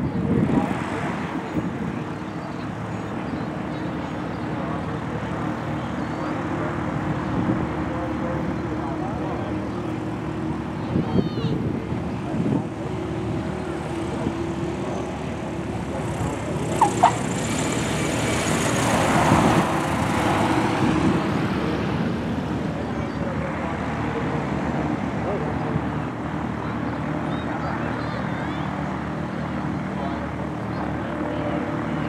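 Single-engine propeller light plane, its piston engine running steadily as it comes in and passes down the runway, loudest about two-thirds of the way through. Two short sharp clicks come just before the loudest part.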